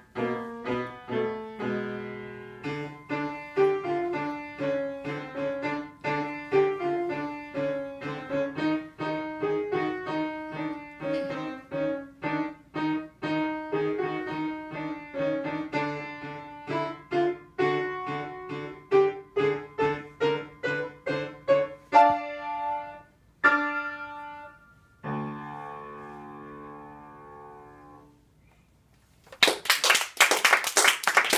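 Upright piano playing a fast piece: quick notes over a repeated low bass figure, a climbing run, a few short detached chords, then a final held chord that slowly dies away. Clapping breaks out right at the end.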